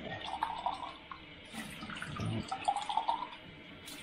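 Purified water running from a Tyent water ionizer's spout into a glass.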